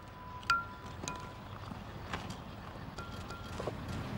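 A few hard clinks, each ringing briefly with a metallic tone, the loudest about half a second in, as bricklaying gear knocks against brick, over a low rumble of wind on the microphone.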